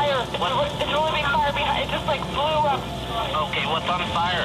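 A recorded emergency phone call, its voices thin and cut off at the top as through a telephone line: a woman caller reports a fierce fire, and near the end the dispatcher asks what is burning.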